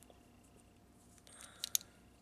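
Small hard-plastic toy parts clicking twice in quick succession about one and a half seconds in, against a quiet room.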